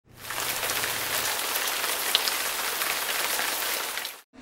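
Steady rain falling, fading in at the start and cutting off abruptly at the end.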